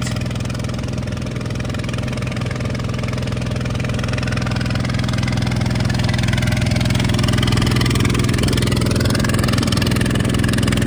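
A truck engine idling steadily with a constant low hum, growing slightly louder in the second half.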